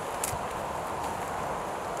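Steady outdoor hiss with a few faint, soft hoofbeats of a horse moving on the arena surface.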